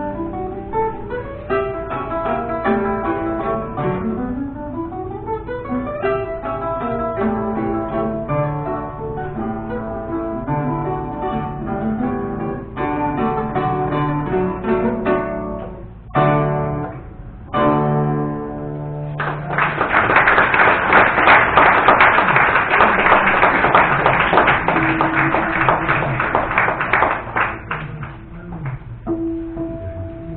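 Two romantic guitars, reproductions of c. 1815 Neapolitan Vinaccia and Fabbricatore models, play a duet of quick rising scale runs and chords that ends with a few separate closing chords a little past halfway. Then the audience applauds for several seconds, the loudest part, and the applause dies away near the end.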